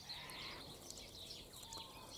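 Faint bird calls in the distance, short high chirps scattered over quiet outdoor background.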